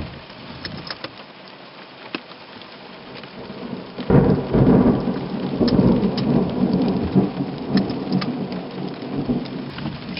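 Heavy rain falling on a car's roof and windscreen, heard from inside, with single drops ticking. About four seconds in, a close thunderclap breaks out suddenly and rumbles on, slowly easing.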